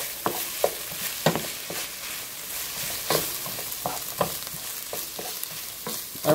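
Ground beef and shredded cabbage sizzling steadily in a frying pan while a wooden spoon stirs them, scraping and tapping against the pan at irregular moments.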